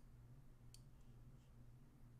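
Two faint computer mouse clicks about three-quarters of a second apart, over a low steady hum.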